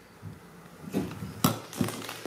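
A glass jar being handled and set down on a table, with one sharp knock about one and a half seconds in.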